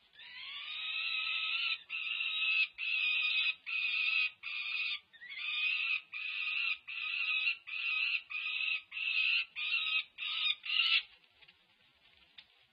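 Peregrine falcon chick wailing: one long, drawn-out call, then a string of about a dozen shorter wails, each about half a second, that stop about a second before the end. These are the loud, harsh begging calls of a five-week-old chick during a feeding squabble.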